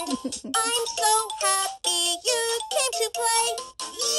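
VTech Rattle and Sing Puppy baby toy playing one of its built-in children's songs: a recorded voice singing a bright, bouncy tune over electronic backing, in short separate notes.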